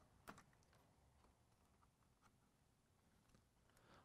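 Near silence: room tone, with one faint short click about a third of a second in.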